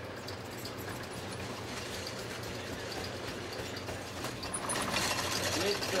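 A broom-making machine running: a steady low hum with light mechanical clicking, then a fast, even clatter that starts about four seconds in and grows louder.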